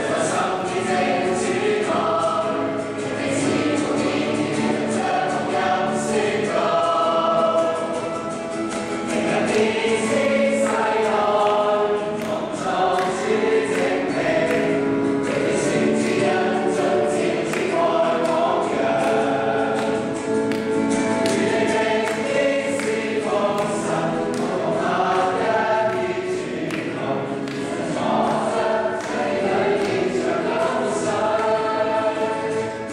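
A group of voices singing a Christian worship song together: the youth fellowship's group song.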